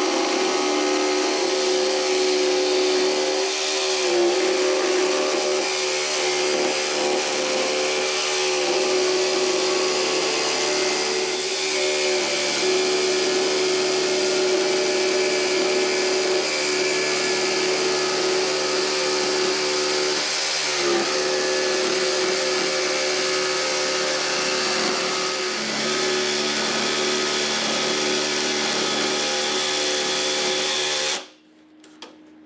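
DeWalt XR cordless jigsaw cutting a curve through a 2x6 board, its motor and blade running steadily. The motor pitch dips briefly a few times as the cut is steered.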